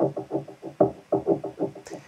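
A percussive sample layer from a dark hip-hop beat playing back: a fast, even run of short knocks with a scratchy, wood, metal-y ring.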